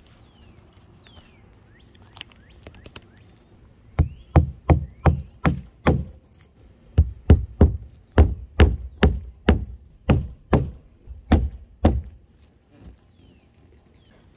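Claw hammer driving roofing nails through rolled asphalt roofing along the drip edge: about twenty quick blows, roughly three a second, starting about four seconds in, with a short pause after the first six and stopping near the end.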